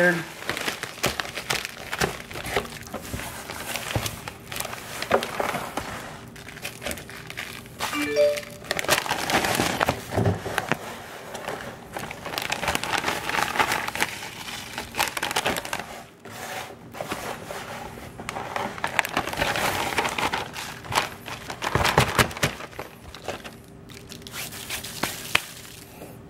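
A one-gallon Ziploc plastic bag crinkling and rustling irregularly as hands press and smooth it flat around a dry-rubbed pork belly.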